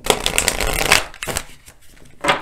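A deck of tarot cards riffle-shuffled by hand: a rapid flutter of cards for about a second, then a second, shorter flutter, then only a few light ticks.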